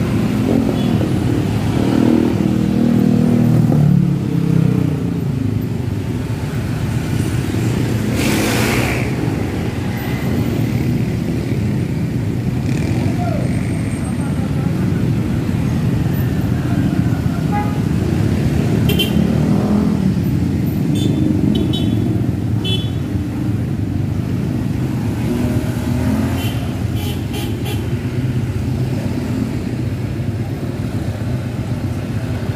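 Busy road traffic: cars, scooter-type motorcycles and minibuses driving past close by, engines running and tyres on the road. In the first few seconds a nearer vehicle's engine is loudest, its pitch dropping as it goes by.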